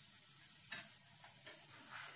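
Faint sizzle of food frying in a pan on a gas burner, with a couple of light clicks of a kitchen utensil.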